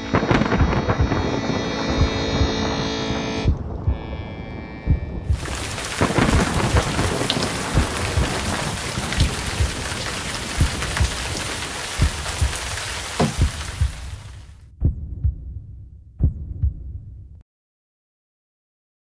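A dense rushing noise over irregular low thuds, with held musical tones beneath it in the first few seconds. The rushing swells about five seconds in and stops about three-quarters of the way through; the thuds go on a little longer, and then all sound cuts off abruptly near the end.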